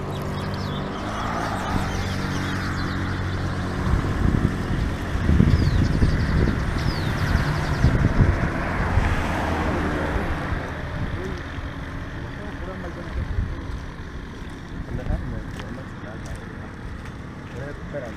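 Roadside traffic: a vehicle engine's steady hum, then a louder rumble of a vehicle going by from about four to ten seconds in, fading to a lower background noise with a few light clicks.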